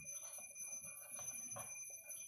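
Whiteboard marker writing, a few short faint strokes of the tip on the board, over steady thin high-pitched electronic tones.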